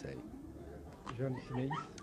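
A short pause in a spoken conversation, then a couple of brief voiced syllables about a second in, like a murmur or short utterance, before speech resumes.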